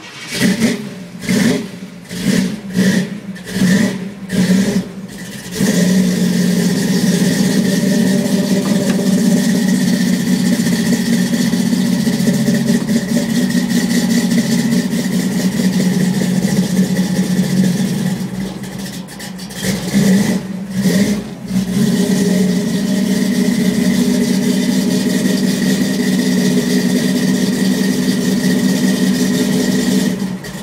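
Chevy truck engine on its first cold start of the year, heard from inside the cab: about five seconds of uneven, pulsing cranking, then it catches and settles into a steady idle, with a few short revs a little past halfway.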